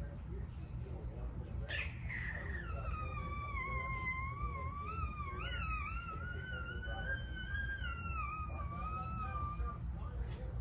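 A small dog whining: one long, wavering high whine that starts about two and a half seconds in and runs for some seven seconds.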